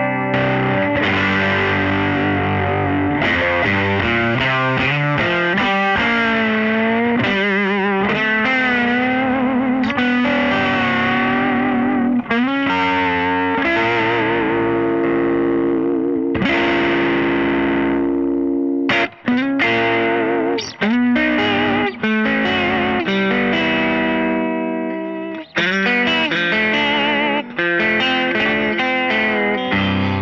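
Fender Jazzmaster Ultra electric guitar, fitted with Fender Pure Vintage '55 pickups, played with overdrive. Sustained chords and notes, some wavering in pitch, with a few short stops in the playing after about 19 seconds.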